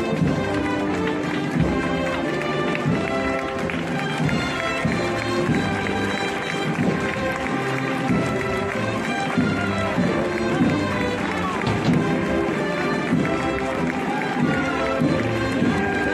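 Processional music with brass instruments playing steadily, with crowd voices underneath.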